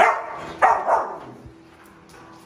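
Pit bull barking: a few short, loud barks within the first second.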